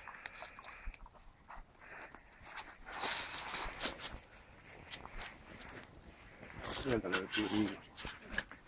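Wood campfire crackling and popping in short, sharp snaps. A person's voice is heard briefly near the end.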